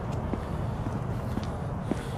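Low, steady rumble of a car on the street and the traffic around it, with a few faint clicks over it.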